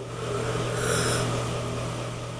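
A man yawning: a long breathy exhale through a wide-open mouth that swells about half a second in and slowly fades.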